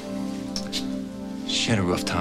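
Soft background music of sustained, held chords that barely move. A person's voice comes in near the end.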